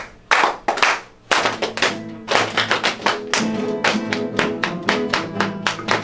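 A class of acoustic guitars playing together in rhythm. Sharp percussive strokes come first, and about a second in, bass notes and strummed chords join in, with steady taps keeping the beat.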